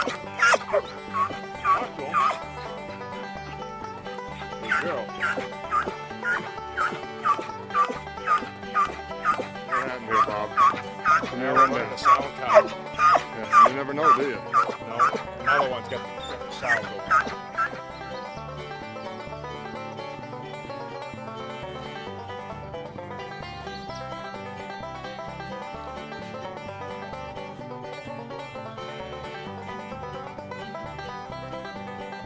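A hunting hound barking over and over, about two barks a second, for most of the first eighteen seconds: the bay of a hound holding a black bear cub up a tree. Background music runs underneath and carries on alone after the barking stops.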